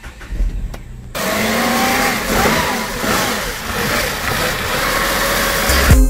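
Tata Tiago's engine being started: a loud whirring starts about a second in and carries on with a wavering, gliding pitch until it stops near the end.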